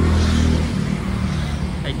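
A low engine hum, loudest in the first half-second and then fading away.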